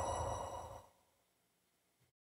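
The tail of a played-in audio clip: a sustained sound with several steady high tones dies away over about the first second, then the audio cuts to dead silence.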